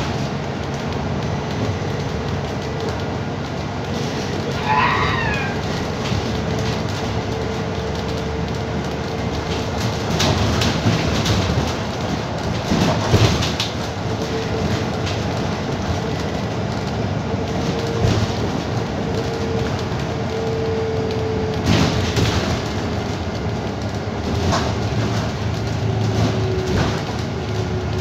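Inside a moving bus: a steady running rumble with a held hum that drops slightly in pitch near the end. There is a brief squeak about five seconds in, and the interior knocks and rattles now and then.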